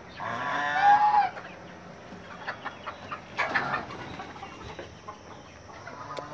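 Chickens in a coop: one loud, drawn-out call in the first second, then quieter clucking, with another short call about three and a half seconds in.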